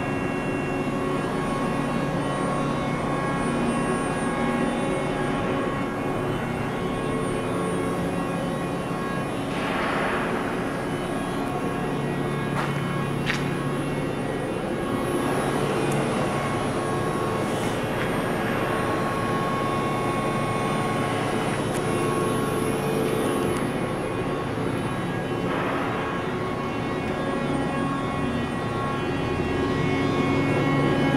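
Mori Seiki NL3000MC CNC lathe running, giving a steady machine hum of motors, pumps and fans made of many held tones, with a few brief swells of hiss.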